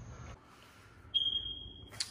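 A high-pitched electronic beep, one steady tone that starts suddenly about a second in and holds to the end.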